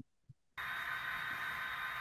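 Steady hiss with a faint high whine, cutting in abruptly about half a second in after near silence.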